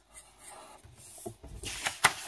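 Marker pen rubbing on a paper worksheet as an answer is circled, then a sheet of paper rustling loudly near the end as it is lifted and turned.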